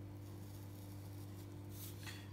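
Sharpie felt-tip marker drawing on paper, faint, with a brief scratch near the end, over a steady low electrical hum.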